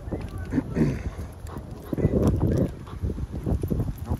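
Wind buffeting the microphone with a low rumble, over a large dog panting on the leash.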